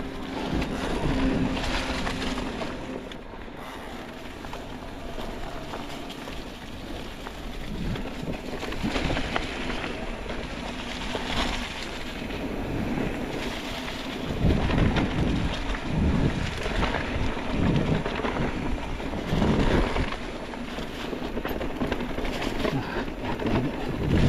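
Orbea Wild FS electric mountain bike riding fast over leaf-covered dirt singletrack. Wind rushes on the camera microphone, the tyres roll through dry leaves, and the bike rattles over the bumps, with heavier thumps in the second half.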